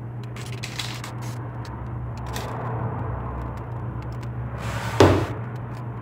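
Quiet kitchen handling sounds over a steady low hum: faint clicks and scrapes while whipped cream is piped from a piping bag onto a cake, then, about five seconds in, a brief louder rustle and knock as the piping bag is set down on the counter.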